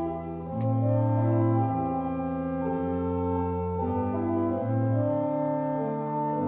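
Church organ playing slow, sustained chords, the notes changing about every second.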